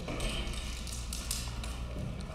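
Large paper plan sheets being handled and set on an easel: a few short rustles and light taps over a steady low room hum.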